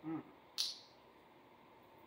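A short hummed 'mm', then about half a second in a single brief, sharp smack.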